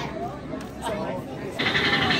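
Indistinct background chatter of people in a busy dining hall. About one and a half seconds in, it cuts suddenly to a louder, denser sound.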